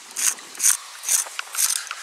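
A pencil scratching on a rough wall in short repeated strokes, about two a second, marking a line.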